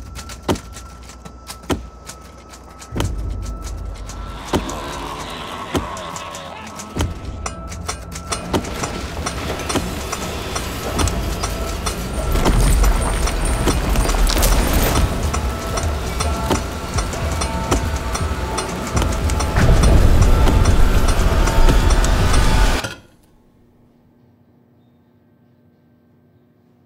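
Film trailer soundtrack: a dense mix of music and sound effects with many sharp hits over a steady high tone, building louder, then cutting off abruptly about three seconds before the end and leaving only a faint low hum.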